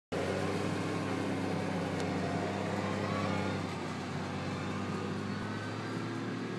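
Tractor diesel engine running steadily under load while pulling a turf cultivator across grass. It grows a little fainter a few seconds in as the tractor draws away.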